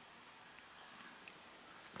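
Near silence: a faint steady hiss with a few tiny high blips.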